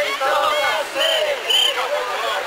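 Group of mikoshi bearers shouting a rhythmic carrying chant as they sway the portable shrine, many men's voices overlapping, with a shrill high note repeating in pairs about half a second apart.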